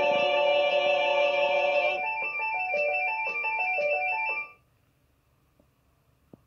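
Electronic jingle from a TV channel bumper. A held synthesized chord gives way to a run of short notes over a high held tone, ending abruptly about four and a half seconds in, then near silence.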